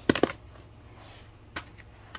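Plastic Blu-ray case set down on a shelf: a quick cluster of sharp clacks at the start, then a couple of faint clicks about a second and a half in.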